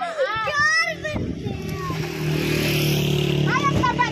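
A motor vehicle's engine running steadily, a low even hum with a hiss over it from about a second in. High-pitched voices are heard briefly at the start and again near the end.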